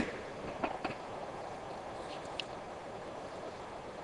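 Quiet steady background hum with a few faint clicks about a second in, from a plastic phone case being handled in gloved hands.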